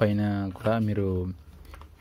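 A man's voice speaking for about the first second and a third, then a quiet pause.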